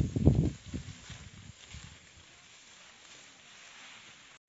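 Irregular low rumbling for about the first half-second, then faint steady outdoor hiss in an open field.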